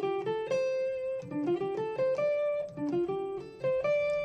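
Electric guitar played clean, a single-note blues phrase on the pentatonic scale, one note at a time with short slides between some of them, played higher up the fretboard.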